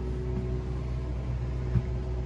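Steady low hum of machinery running in the trailer, with a faint steady tone above it and one soft thump near the end.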